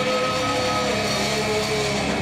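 Live rock band playing through guitar amplifiers, the electric guitars holding sustained notes.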